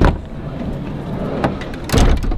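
A van's sliding side door is unlatched with a sharp clack and rolled open, rumbling along its track, with a second loud knock near the end.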